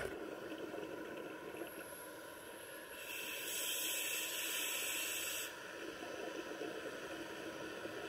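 A steady, even underwater noise heard through a camera housing. About three seconds in, a louder hiss lasts about two and a half seconds and then cuts off: a scuba diver drawing a breath through the regulator.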